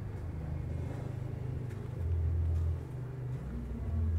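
Low, steady engine rumble from a motor vehicle running nearby, swelling briefly about halfway through.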